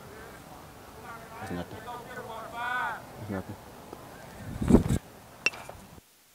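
Faint, distant voices calling across a baseball field. Near the end there is a louder burst of noise, then a single sharp crack of a bat hitting the pitched ball.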